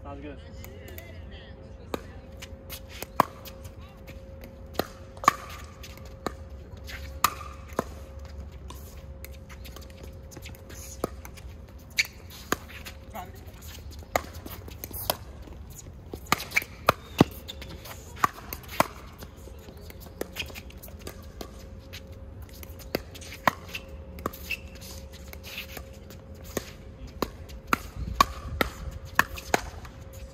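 Pickleball paddles striking a hard plastic pickleball, with the ball bouncing on the hard court. The result is a string of sharp pops at irregular intervals, coming in quick runs during rallies, with the busiest runs about halfway through and near the end.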